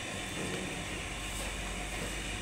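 Steady background noise of a market hall: an even hiss with a low rumble underneath and no distinct sounds standing out.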